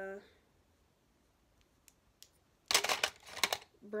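Makeup brushes handled by hand: a few faint clicks, then a brief loud rustling clatter about three seconds in.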